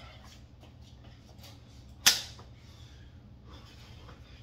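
A single sharp knock about two seconds in, as a person drops from standing into a push-up plank on a pair of hex dumbbells. Faint, soft breathing sounds come before and after it.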